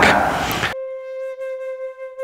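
Background flute music: a single steady note held, starting abruptly under a second in, after a brief stretch of fading room noise.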